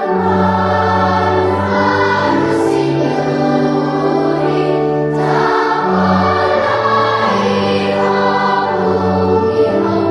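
Choir singing a hymn in held chords, the harmony changing every few seconds.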